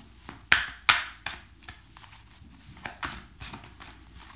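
A deck of tarot cards being shuffled by hand: a series of quick card slaps and flicks, the two sharpest about half a second and a second in, then softer ones.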